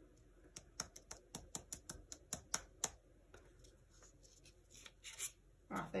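Fingers pressing and patting the cardboard back of a foam printing block down onto paper: a quick run of light taps, about five a second, for roughly three seconds. A soft peeling rustle follows near the end as the block is lifted off the wet paint.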